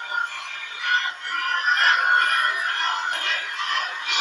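Sound-art installation playing a dense mass of many overlapping synthetic sung or electronic tones at once, a steady chorus-like texture without pauses. It grows louder about a second in.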